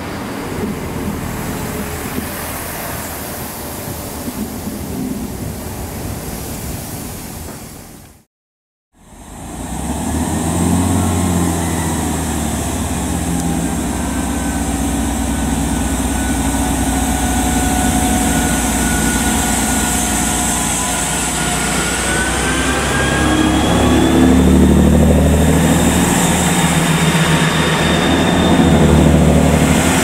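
GWR Class 165 Thames Turbo diesel multiple unit moving away along the line. Then, after a cut, a Class 165 unit's diesel engines run at the platform, their tones rising in pitch about two-thirds of the way through as the train pulls away and passes close by, getting louder near the end.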